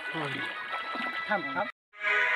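Voices of a group of young men calling out, which cut off abruptly near the end.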